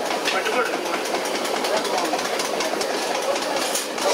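Indistinct background voices over a steady din of clatter and clicks.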